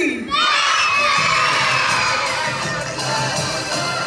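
A crowd of children shouting and cheering together, breaking out just after a falling tone dies away and staying loud throughout.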